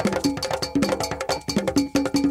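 Ghanaian traditional dance music: a bell-like percussion strike keeps a fast, even beat over drum tones that alternate between two pitches.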